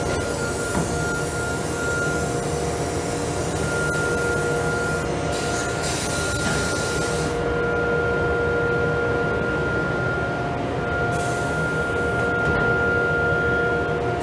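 CNC router running: a steady high whine with a few held tones over a steady rushing hiss, the hiss thinning in its upper range for stretches after about seven seconds and again near the end.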